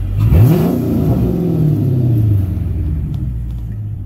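A 2006 Chrysler 300 SRT8's 6.1-litre Hemi V8 is blipped once from idle: the revs climb quickly in the first half-second, then fall back to a steady idle over the next two to three seconds.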